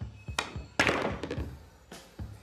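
A pool shot over background music: the cue tip clicks against the cue ball, and a moment later a louder clack of billiard balls colliding rings out and dies away.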